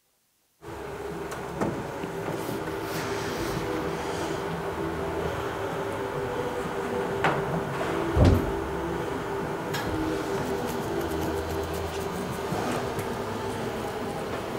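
Lecture-room background noise while the audience works quietly: a steady hum with rustling, a few small knocks and clicks, and a louder thump about eight seconds in. It opens with a moment of dead silence where the recording drops out.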